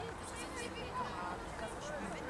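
Distant, overlapping shouts and calls of players and coaches across an open football pitch, unintelligible, over outdoor background noise and a faint steady hum.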